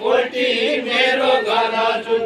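Men's voices singing a Deuda folk song together in a chant-like refrain, with long held notes.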